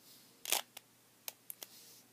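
Plastic 3x3 Rubik's cube layers being turned by hand: a louder clack about half a second in, then several short, sharp clicks.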